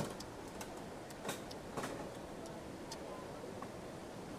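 Steady rush of stream water, with a few scattered light clicks of chopsticks and tableware on the dishes.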